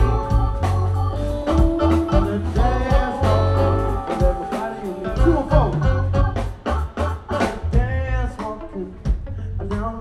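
Live funk band playing an instrumental passage: drum kit keeping a steady beat under electric bass, electric guitar and Hammond B3 organ, with a wavering, bending organ or guitar line about seven seconds in.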